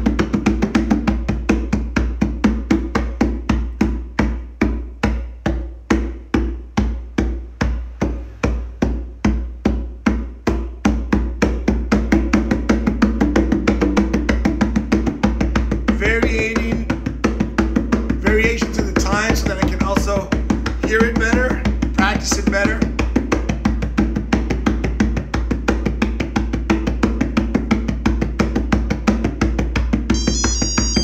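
Conga-style hand drum (capoeira atabaque) played with bare hands in a steady, fast repeating rhythm, practising the closed, muted stroke.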